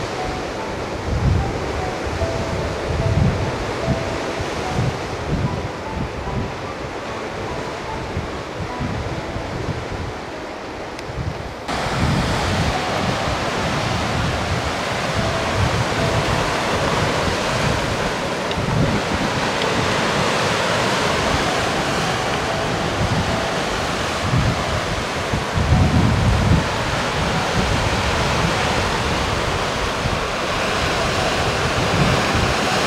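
Sea waves breaking and washing over rocks, with wind buffeting the microphone in low gusts. The sound changes abruptly about twelve seconds in, becoming louder and fuller.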